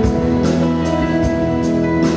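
Live band playing an instrumental passage between sung lines of a ballad: sustained chords with electric guitar over a drum kit keeping a steady beat.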